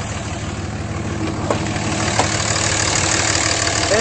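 The 2007 Dodge Ram 2500's 5.9-litre Cummins inline-six turbo diesel idling steadily, growing gradually louder, with two light clicks in the middle.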